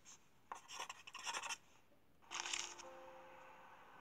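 Editing sound effect of a pen or pencil scribbling on paper: scratchy strokes for about a second, then a shorter stroke a little after the middle, followed by a faint held tone.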